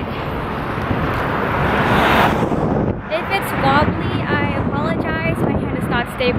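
Road traffic passing close by, swelling to a peak about two seconds in and dying away by three seconds, with wind on the microphone. A voice follows from about three seconds in.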